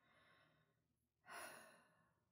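A woman's close-miked breathing: a faint breath at the start, then a louder sigh about a second and a quarter in that fades away.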